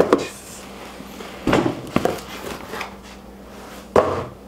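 Unboxing handling noise: a padded tool bag is pulled out of a cardboard box and set on a wooden benchtop, with cardboard and fabric rustling and a few dull knocks, two of them a half second apart near the middle and a sharper thump at the end.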